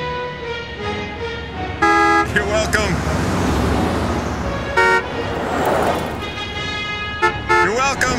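City street traffic with vehicles passing close by and a car horn honking several times: a long toot about two seconds in, another near five seconds, and a few short toots near the end.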